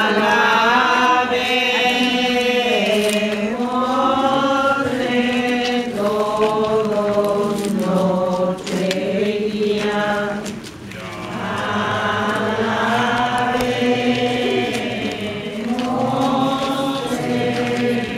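A crowd of people singing a religious hymn together in unison, in long sustained phrases, with a short break about eleven seconds in.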